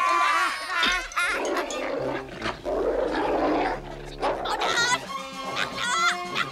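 A cartoon dog growling and barking over background music.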